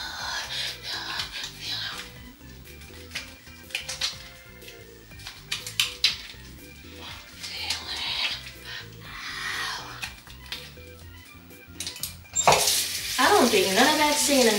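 Wet hands rubbing lathered face cleanser over the skin: soft hissing rubs and small clicks over background music. About 12.5 s in, a bathroom sink tap is turned on and water runs loudly into the basin, with a woman's voice over it near the end.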